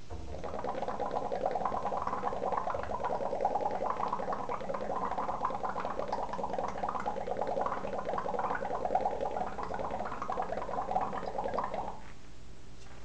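Methane gas bubbling from a hose into a trough of soapy water: a steady, dense run of small rapid pops and gurgles as a heap of soap-bubble foam builds up. It starts suddenly and goes on without a break.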